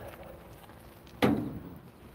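A single sharp thump about a second and a quarter in, fading within half a second, over faint background noise.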